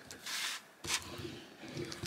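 A short scraping rustle of card being pressed down on a Cricut cutting mat, then a single light knock just under a second in.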